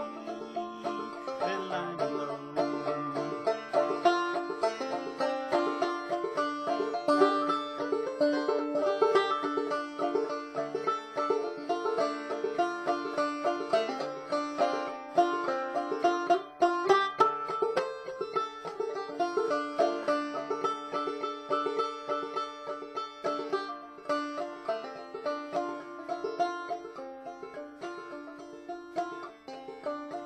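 Solo banjo playing an instrumental break of an old-time folk tune: a steady, continuous stream of plucked notes with no singing.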